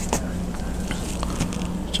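A steady low hum with a few faint, short ticks.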